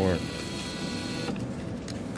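Vending machine bill acceptor's motor whirring as it pulls a dollar bill into the slot, a steady whine that drops with a click just past halfway and goes on more faintly.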